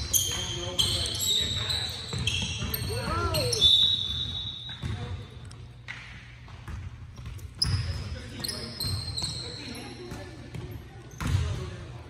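A basketball bouncing on a hardwood gym floor, with sneakers squeaking in short high chirps as players move, all echoing in a large gym.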